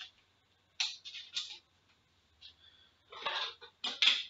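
Several short bursts of plastic rustling and sliding as a trading card is slipped into a clear plastic penny sleeve and handled.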